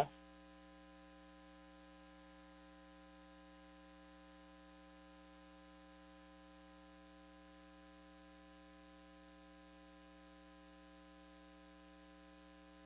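Near silence with a faint, steady electrical hum on the audio line.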